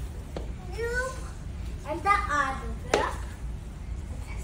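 A small child's high-pitched wordless vocalizing in two short bursts, about one and two seconds in, followed by a single sharp knock just before three seconds.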